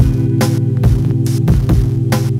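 Electronic music: a sustained low bass drone under a steady beat of percussive hits, a little over two a second.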